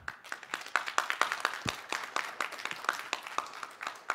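Audience applauding, the clapping slowly thinning out toward the end.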